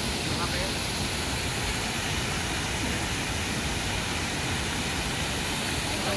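Steady, even rushing outdoor noise with faint voices of people in the background.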